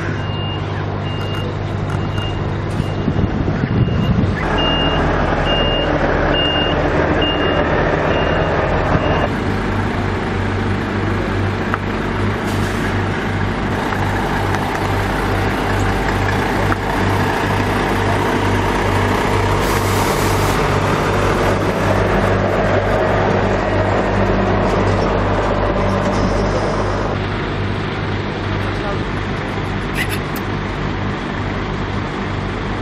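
Diesel semi-truck engines running, with a reversing alarm beeping about twice a second for the first nine seconds or so.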